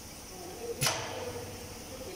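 Two-nozzle weighing liquid filling machine running as liquid flows into plastic jerrycans, with a steady hiss. One sharp click with a short burst of hiss comes about a second in.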